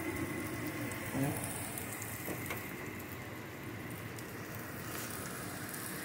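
Breaded pork cutlet shallow-frying in canola oil in a stainless steel skillet: a steady sizzle with fine crackles.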